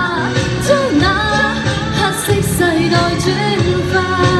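A woman singing a Cantonese pop song into a microphone over backing music.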